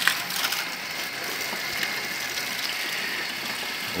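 Water from a garden hose splashing steadily onto potted plants, leaves and soil, a continuous even hiss.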